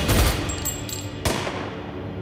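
Automatic gunfire from compact submachine guns: a burst of shots at the start and one more sharp shot a little past a second in, over a dramatic music score.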